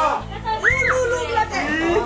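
Children and teenagers shouting and calling out excitedly, several voices overlapping.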